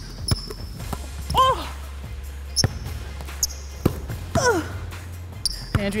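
Basketball dribbled on a hardwood gym floor: irregular bounces during a one-on-one, mixed with short high squeaks of sneakers on the court.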